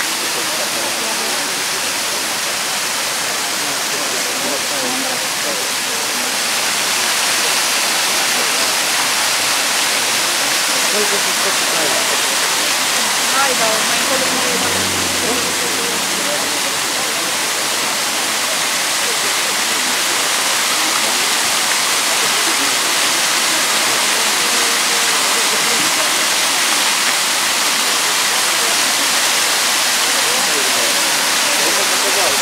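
Bigăr waterfall: water spilling over a mossy limestone-tufa ledge and splashing into the pool below, a steady rushing hiss that grows slightly louder after about seven seconds.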